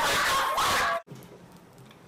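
A child's loud, high-pitched shriek lasting about a second, cut off suddenly, then quiet room tone.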